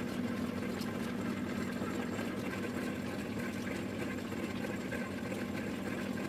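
Mustard oil expeller machine running with a steady, even drone.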